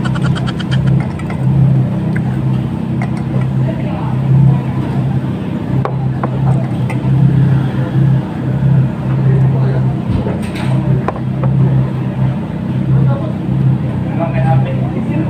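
Low engine hum that swells and dips unevenly, with small clicks of eating and faint voices in the background.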